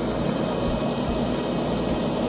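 Mobile soil screening machine running steadily, its stacking conveyor belt dropping sieved dredged soil onto a pile, in an even mechanical noise with a low engine hum underneath.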